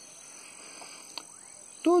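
Faint, steady high-pitched calling of frogs, with a single short click about a second in.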